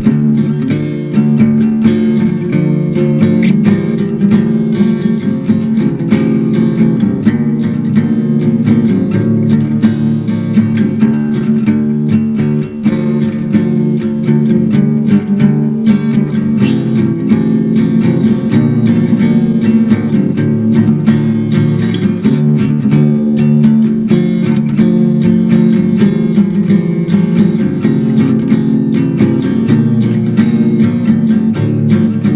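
Acoustic guitar played continuously, with many picked notes in quick succession, heard from a tape-recorder recording.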